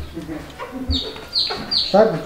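Chickens calling in the background: three short, high peeps that fall in pitch, about 0.4 seconds apart, in the second half.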